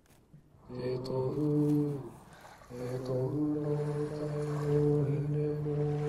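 A waiata (Māori song) sung in long held notes: a short phrase about a second in, then one long sustained note from about three seconds in. It is played through a laptop speaker into the room.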